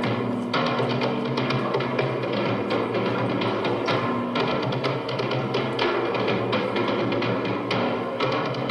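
Black metal band playing live: dense, rapid drumming under long held notes.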